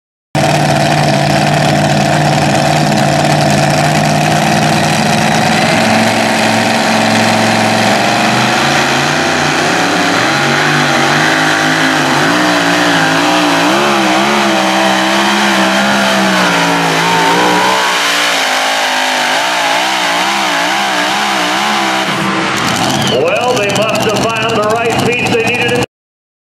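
Supercharged engine of a two-wheel-drive pulling truck running hard under load as it drags a weight sled, first at a steady high pitch. From about a third of the way in, the pitch wavers up and down as the rear tyres spin and hop in the dirt. Near the end the engine note changes abruptly as the pull ends.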